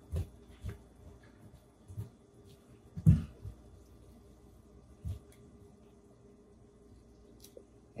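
Metal kitchen tongs tossing drained spaghetti in a stainless steel colander: a few scattered clicks and knocks of tongs against steel, the loudest about three seconds in, over quiet room tone.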